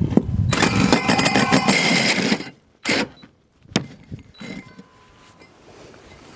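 Cordless drill spinning a 4½-inch hole saw through the ZIP System sheathing and wooden rim board. The cutting stops suddenly about two and a half seconds in as the saw breaks through, and a couple of sharp knocks follow.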